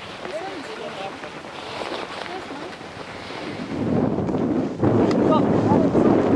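Faint voices over light wind, then from about four seconds in strong wind buffeting the microphone, much louder and lasting to the end.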